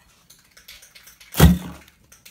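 Faint clicks and rustling, then one loud thump about one and a half seconds in that fades within half a second.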